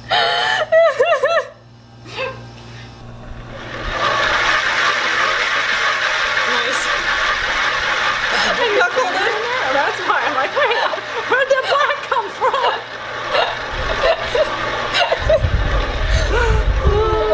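Spin-art spinner whirring steadily with a paint-covered canvas board on it, starting about four seconds in. Women laugh at the start and again over the spinning.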